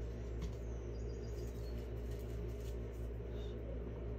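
Steady low hum with faint room noise, and a few faint high chirps about a second in.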